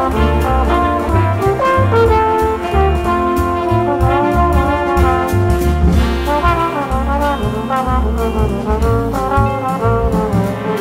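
Big band jazz: a trombone carrying the melody line, with trumpets and saxophones, a walking bass and drums with steady cymbal strokes.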